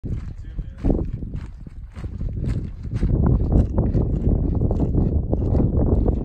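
Footsteps on a dirt and gravel hiking trail at a walking pace, about two steps a second, over a low rumble that gets louder about halfway through.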